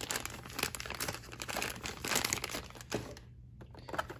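Thin clear plastic bag crinkling as it is handled, a dense crackle that dies down about three seconds in.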